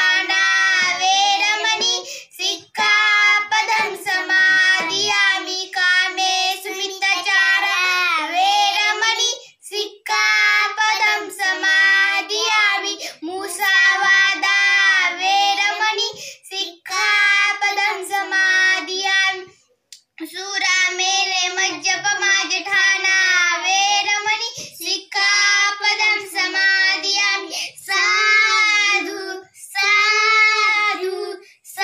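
Children chanting Buddhist verses in Pali in a sung, near-monotone melody, in phrases of a few seconds with short breaths between and a longer pause about two-thirds of the way through.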